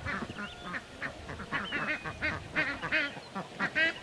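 Birds calling: a rapid run of short, nasal calls, about four or five a second, with a few whistled notes over them.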